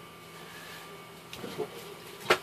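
Quiet workshop room with faint rustling and a few light clicks of a person moving and handling things right by the microphone, over a faint steady hum.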